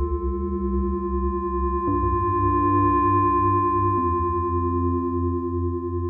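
Korg Minilogue analogue polyphonic synthesizer playing held chords on its "The Howling" patch from the Lo-Fi Textures pack: a dark, drony pad with a steady high tone ringing above and a pulsing low end. The chord changes about two seconds in and again about four seconds in.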